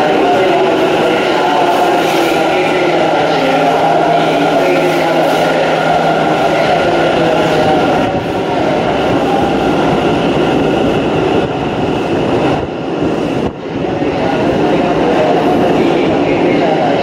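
Electric commuter train running in along an underground station platform and slowing to a stop: a loud, steady rumble of wheels and motors with a thin steady whine, dipping briefly about three-quarters of the way through.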